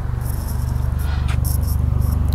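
Helicopter overhead, its rotor beating in a rapid, even low pulse that grows gradually louder as it approaches.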